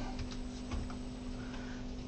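Quiet room tone between spoken sentences: a steady low electrical hum over a background hiss.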